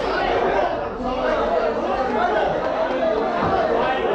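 Indistinct chatter of several people talking at once, with overlapping voices that never break off.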